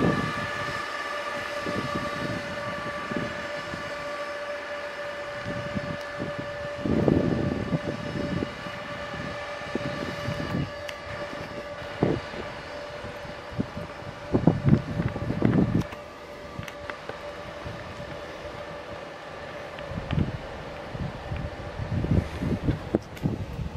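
Bombardier TRAXX Class 185 electric locomotive running light at low speed, its traction equipment giving a steady whine made of several tones that fades toward the end. Irregular low knocks from the wheels crossing the points come through several times.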